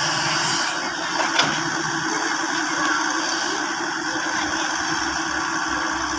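Hitachi crawler excavator's diesel engine running steadily under hydraulic load as the boom swings and the bucket works soil.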